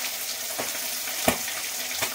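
Small fish frying in hot oil in a wok: a steady sizzle, with two light knocks about half a second and just over a second in.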